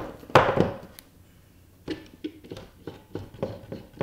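A Steadicam Merlin 2 stabilizer, camera mounted, being handled over a wooden tabletop and set on its docking stand. There is one solid knock about a third of a second in, then after a short pause a run of light taps and clicks.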